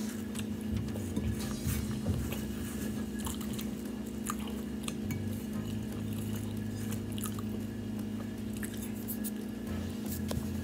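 A person chewing a mouthful of buttered yeast dinner roll with the mouth closed, with scattered small mouth clicks, over a steady low hum.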